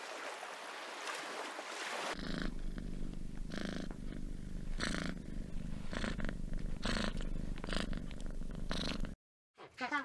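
Tabby cat purring: a steady low rumble with brighter surges roughly every second, after about two seconds of surf hiss. Near the end the purring cuts off, and after a short silence king penguin calls begin.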